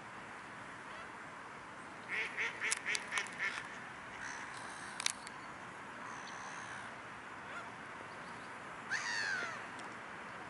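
Mallard ducks quacking: a quick run of about six quacks about two seconds in, then a single drawn-out call that falls in pitch near the end.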